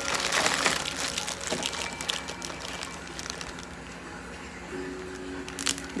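Plastic zip-lock bag crinkling and rustling as it is handled, loudest and busiest in the first second or so, then lighter scattered rustles.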